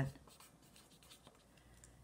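Faint scratching of a pen tip moving over paper.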